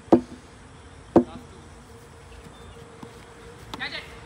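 A single sharp, loud crack about a second in: a plastic cricket bat striking the ball. A short shout comes right at the start and a brief voice near the end, over a faint steady hum.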